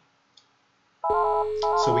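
Polycom desk phone ringing: an electronic ringtone of quick alternating tones over a steady lower tone, starting suddenly about a second in.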